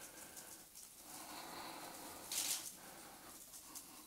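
Faint room noise during a pause in speech, with one brief soft noise a little past halfway through.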